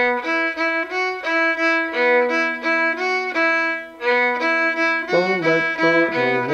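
Solo violin bowed: a run of short notes changing pitch about three times a second, with a brief break about four seconds in before the phrase goes on lower.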